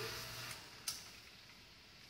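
The steady hum of a DIY microwave plasma treater's equipment cuts off about half a second in, as the Variac and vacuum are switched off, followed by a single sharp switch click just under a second in; after that only faint room tone remains.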